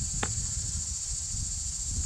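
A steady high-pitched chorus of insects in summer, with a low rumble underneath and one small click about a quarter second in.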